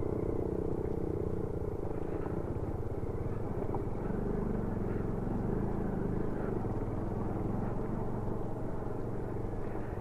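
Bajaj Dominar 400's single-cylinder engine running steadily as the motorcycle rides over a rough gravel track.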